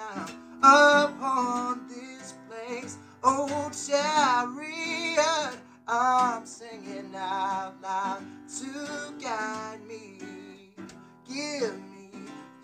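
A man singing over his own strummed acoustic guitar, his voice sliding and wavering between held notes while the chords ring underneath.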